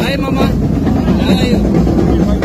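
A person's voice gliding in pitch twice over a loud, steady low rumble.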